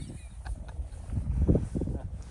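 Wind rumbling on the microphone, with a few soft knocks and a brief louder thump about one and a half seconds in.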